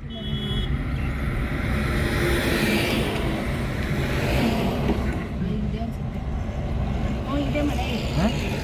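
Car cabin road noise while driving: a steady rumble from the tyres and engine, heard from inside the car.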